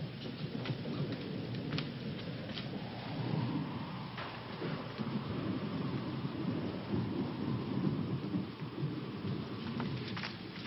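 A rainstorm with low rolling thunder: a steady rain hiss under a rumble that swells and ebbs, with a few sharp ticks in the first half. The sound is narrow and muffled, as on an old film soundtrack.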